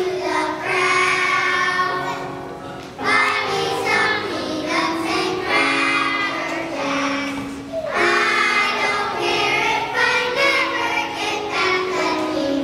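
A class of kindergarten children singing together with piano accompaniment, in phrases of a few seconds with short breaks about three and eight seconds in.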